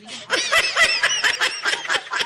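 A group of people laughing hard, many voices at once, with high-pitched shrieks of laughter; it swells up about a third of a second in.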